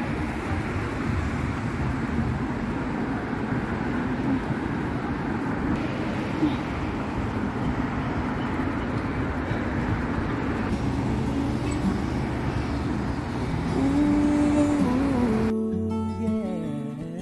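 Steady noise of city road traffic with cars passing below. Near the end it cuts suddenly to acoustic guitar music.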